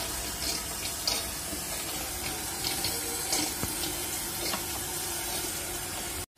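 Steady running and trickling water from the marine aquarium's circulation, with a few faint short ticks through it.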